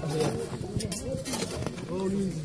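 Steel hand-hoe blades chopping into dry, hard soil, a few sharp strokes around the middle, under overlapping chatter of several men's voices.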